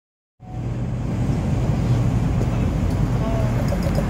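Steady low rumble of ship's machinery running, with a constant low hum, starting abruptly about half a second in.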